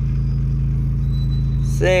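Car engine idling steadily, heard from inside the cabin as a low, evenly pulsing hum.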